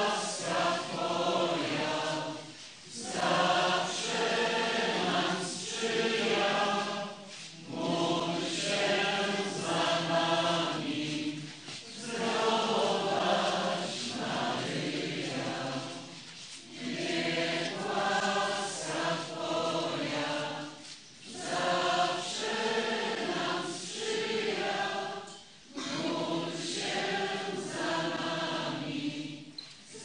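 Many voices singing a hymn together: the closing hymn of a Catholic Mass. It comes in phrases of a few seconds, with short breaths between them.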